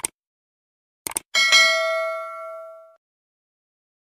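Subscribe-button animation sound effect: a short click, then a quick double mouse click about a second in, followed at once by a bell ding that rings and fades away over about a second and a half.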